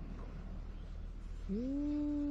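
A cat's low, drawn-out yowl starting about one and a half seconds in. It rises quickly, then holds and slowly falls in pitch, and is still going at the end.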